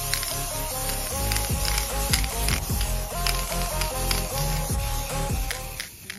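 Background music with a steady beat and a stepping melody, cutting off suddenly near the end.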